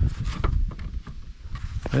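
Soft lead flashing being pressed and bent down by a gloved hand against a brick chimney: a few short crinkling knocks near the start and again near the end, over a steady low rumble.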